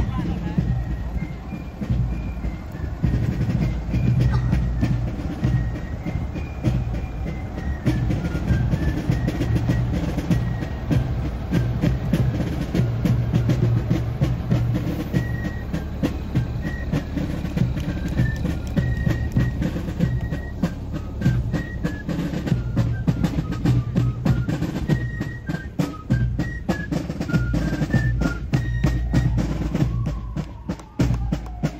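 A fife and drum corps playing a march: fifes carry a high stepping melody, and the drum strokes grow more distinct toward the end. Under it runs the deep rumble of a fire engine's engine as the truck passes about midway.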